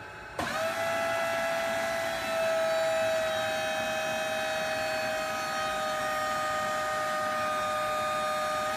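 Forklift hydraulic pump whining steadily as the forks take up a 1,000 lb mold. The whine starts about half a second in and gets a little louder after two and a half seconds.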